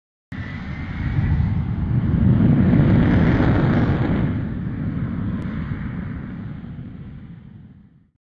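Jet aircraft engine noise that starts suddenly, swells over the first two or three seconds and then fades away, like a jet launching and passing.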